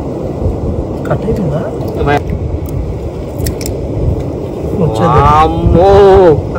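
Steady low rush of sea surf, with a voice calling out loudly near the end.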